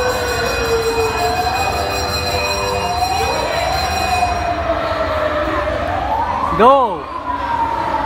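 A siren wailing, its pitch sliding slowly up and down, over the chatter of a crowd. About two-thirds of the way through, a short, loud whoop rises and falls.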